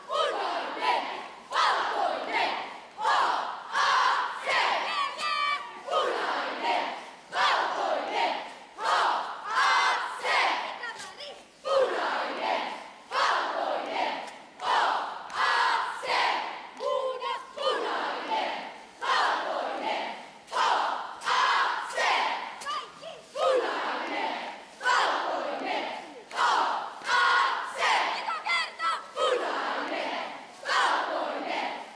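A cheerleading squad shouting a cheer in unison: short, loud group yells about once a second, chanted in rhythm throughout.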